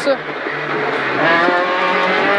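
Peugeot 208 R2 rally car's four-cylinder engine heard from inside the cabin, holding low revs through a corner, then rising in pitch as it accelerates hard about a second in.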